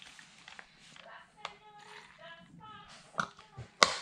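A plastic fuel bottle and the nitro buggy's fuel tank being handled during refuelling: quiet fumbling with a few soft clicks, and one sharp click just before the end.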